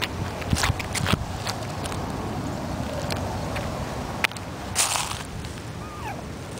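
Sneakered footsteps on a concrete path, with scattered sharp scuffs and clicks and a brief rustle about five seconds in, over a steady low rumble of wind on the microphone.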